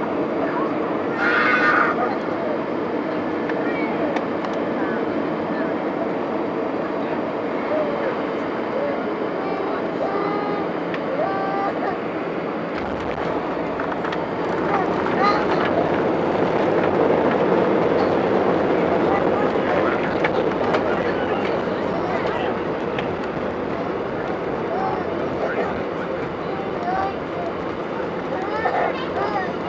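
Cabin noise of a jet airliner landing, heard from a window seat: steady engine and airflow noise on final approach, then a sudden deeper rumble about 13 s in as the wheels touch down and roll on the runway. A few seconds later the noise swells louder for several seconds as the engines are run up for reverse thrust and braking, then eases as the aircraft slows.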